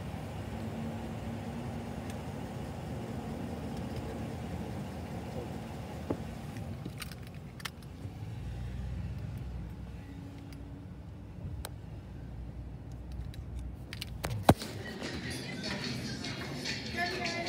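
Car engine running low and steady, heard from inside the cabin, with a few light clicks and one sharp click near the end. In the last second, restaurant chatter and background music take over.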